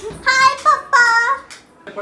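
A girl's high-pitched voice in a short sing-song phrase of three quick notes, breaking off about a second and a half in.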